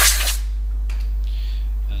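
End of a blast of compressed air from an air blow gun blowing brake dust out of the brake drum, cutting off suddenly about a third of a second in. A low steady hum carries on after it.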